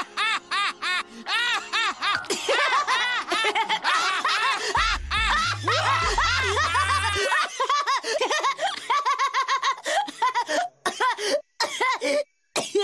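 Two cartoon characters laughing at length in rapid, repeated ha-ha-ha's, the laughter breaking into shorter gasps near the end.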